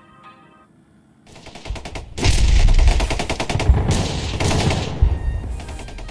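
Radio-controlled P-51 Mustang model's engine on a low pass. It is faint at first, then swells about a second and a half in to a loud, rapid, crackling run of firing pulses with a deep rumble as the plane comes close.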